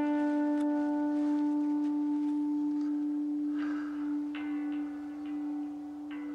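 A single electric guitar note held long and slowly fading, its overtones ringing. A fresh higher note enters about four seconds in.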